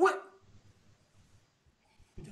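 A man's single short, loud shouted exclamation, "wee!", at the very start, lasting under half a second.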